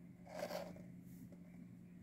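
Quiet room tone with a faint steady hum, and one brief soft rustle about half a second in.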